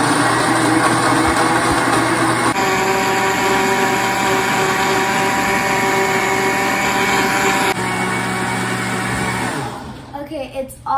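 Countertop blender running at full speed, blending sliced mangoes with water and sugar into a liquid purée. Its tone changes abruptly twice, and near the end the motor winds down with a falling pitch.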